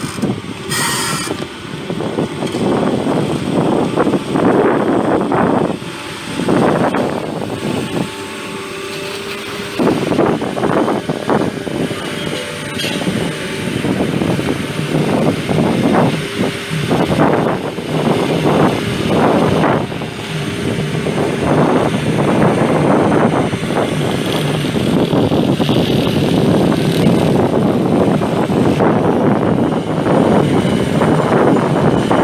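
Caterpillar 320D amphibious excavator on pontoon tracks, its diesel engine running at work, with irregular gusts of wind buffeting the microphone so the level rises and falls every second or two.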